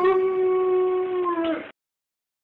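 A dog's howl: one long call that rises at the start, holds, dips slightly near the end and cuts off suddenly, at the tail of the theme music.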